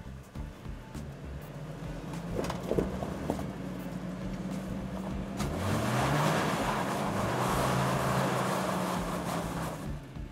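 A 2008 Hummer H3's engine labouring up a sandy hill climb, with a few sharp knocks about three seconds in. Just past halfway the engine revs up and the stock all-terrain tyres spin in loose sand, throwing it in a loud rushing hiss that lasts nearly to the end.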